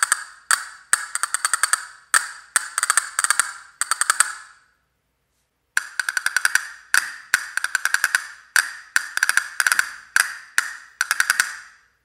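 Castanet machines tapped with the fingers in quick rhythmic groups of sharp wooden clicks. First comes a Black Swamp Overture castanet machine; after a silent gap of about a second, about five seconds in, comes a Black Swamp Pro Concert castanet machine with grenadillo cups.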